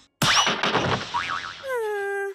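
Cartoon transition sound effect: a sudden noisy burst with quick whistling pitch sweeps, then a pitched tone that slides down a little and holds for about half a second near the end.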